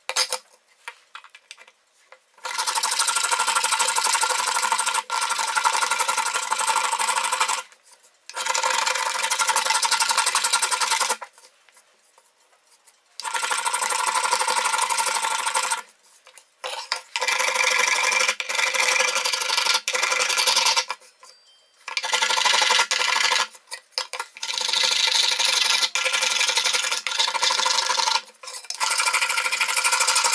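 Small brass finger plane shaving the carved surface of a violin plate in rapid short strokes. The shaving comes in runs of several seconds, broken by short pauses.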